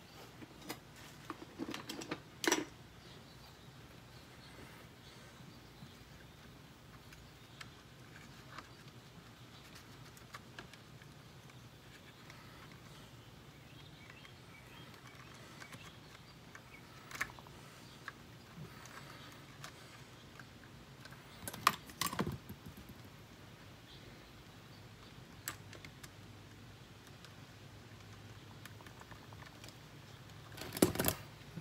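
Scattered small clicks and taps of hands handling wires and small plastic parts on an RC car chassis, with a few sharper knocks, the loudest a little past the middle.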